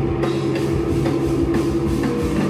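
A live heavy rock band playing: distorted electric guitar through Marshall amps and bass guitar hold a long droning chord over the drum kit.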